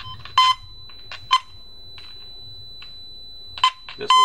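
Pro 210F filter tone probe giving three short, separate beeps as its tip is swept past the coaxial cables, over a faint steady high whine: it is picking up the tone generator's signal only in brief snatches, before it settles on the cable carrying it.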